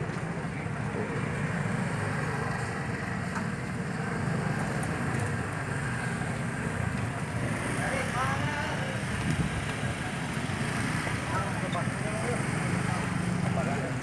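Street market ambience: a steady low rumble of motorbike traffic passing, with voices in the background about eight and eleven seconds in.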